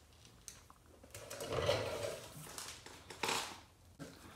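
Microfiber towel rubbing over car paint, wiping off polish residue after machine polishing: soft rubbing from about a second in, then a shorter spell near the end.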